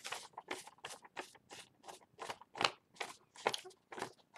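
A hand spray bottle misting water onto paper to moisten it, pumped rapidly in short hissing squirts, nearly three a second.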